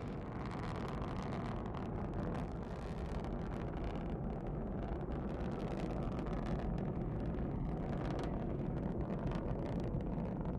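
Soyuz-2.1a rocket's booster and core-stage engines running during ascent: a steady low rumble that holds even throughout.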